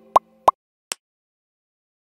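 Electronic pop sound effects of an animated logo sting: three short pops in the first second, each with a quick upward blip in pitch, the last one fainter, over the fading tail of synthesizer music.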